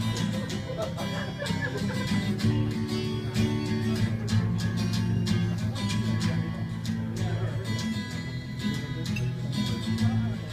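Acoustic guitar strummed steadily, an instrumental passage of chords.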